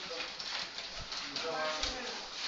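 Dry-erase marker writing on a whiteboard: short pitched squeaks of the marker tip, a brief one near the start and a longer one near the end, with soft taps of the strokes.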